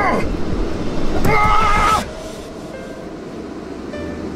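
A man laughing out loud: a laugh that falls in pitch, then a long high-pitched laugh from about a second in that breaks off sharply at two seconds.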